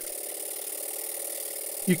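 Stuart Twin Launch Compound model steam engine running steadily: an even, continuous hiss.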